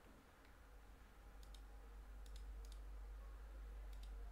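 Faint computer mouse clicks, several of them, some in quick pairs, over a steady low hum of room tone.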